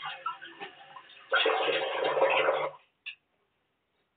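Water running from a tap into a sink for about a second and a half, starting and stopping abruptly, after a few light clicks and knocks of things being handled at the basin; a single click follows near the end.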